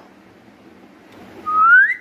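A person whistling one short, clear note that rises in pitch, about a second and a half in, to get a pet cat's attention.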